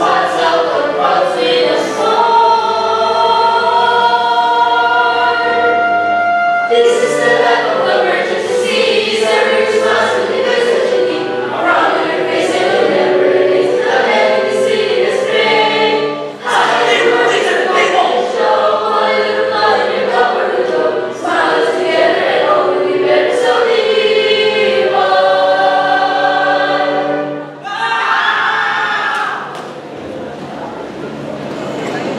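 A musical-theatre number: a group of voices singing together in chorus over musical accompaniment, with long held notes.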